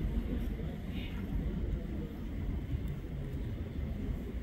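Steady low rumble of room noise in a hall picked up through the podium microphones, with a faint short sound about a second in.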